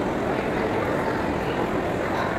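Steady background din of a busy shopping-mall atrium: a constant low rumble with a faint wash of distant voices.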